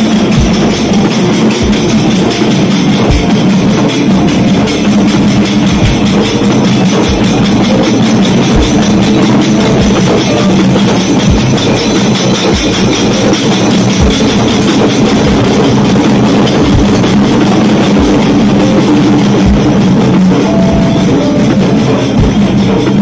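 Marching dhol drums beaten with sticks in a loud, fast, steady rhythm, with deep bass strokes and brass hand cymbals clashing along.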